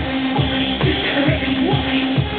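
Loud live music from a stage performance: a steady kick drum beating about two and a half times a second under a held low synth-like note.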